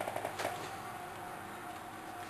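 Faint clicks and rubbing of blue stripe irrigation pipe being pushed by hand onto a plastic T fitting, a few short clicks in the first half second, then only a low steady room background.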